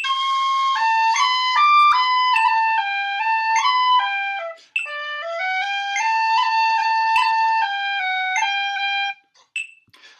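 Tin whistle playing the second line of a 6/8 jig in G, a single line of notes decorated with quick cuts and a long roll on the A in the penultimate bar. The playing runs in two phrases with a short breath just before halfway and stops about a second before the end.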